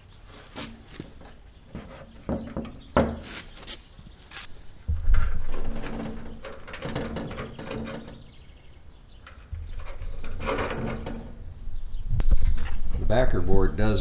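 Victron MultiPlus-II inverter charger being lifted and hung onto its wall bracket: a series of sharp knocks and clicks of the metal case against the bracket, then a heavier thump about five seconds in. Low talk follows.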